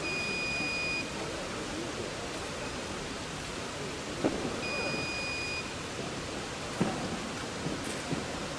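An electronic fencing scoring machine beeps twice, each a steady tone about a second long, one at the start and one about four and a half seconds later, over the steady hiss of a large sports hall. There are a few faint knocks in between.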